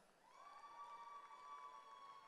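Near silence, with one faint, steady high-pitched tone held without a break.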